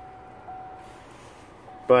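The 2018 Chevrolet Impala's 3.6L V6 idling just after a push-button start, a faint steady hum inside the cabin. A thin steady tone runs under it, breaking off briefly twice.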